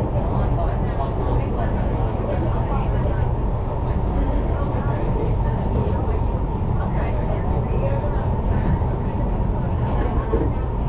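Steady running noise inside a Singapore MRT train travelling along the East West Line, heard from the passenger cabin: a constant low rumble from wheels and running gear with a steady higher hum on top.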